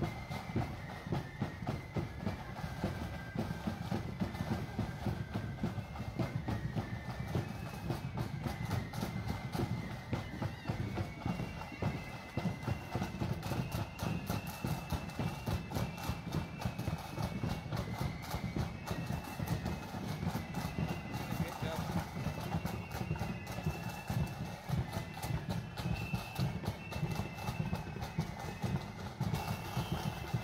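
A marching band playing: a high melody over fast, steady drumming.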